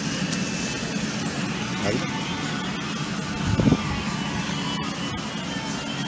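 Steady background noise of a shop floor: a constant low hum under an even hiss, with no single event standing out.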